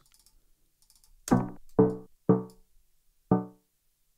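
A melodic sample loop played back in Ableton Live's Beats warp mode, cut by added warp markers into short, stuttering chord stabs: four clipped stabs, starting about a second in, each breaking off quickly rather than flowing.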